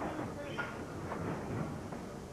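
Low background murmur of spectators' voices over the room tone of a bowling hall, with no distinct impacts.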